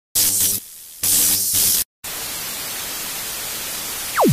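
Static hiss: loud bursts that cut off abruptly into brief dead silences during the first two seconds, then a steady, even hiss for the rest.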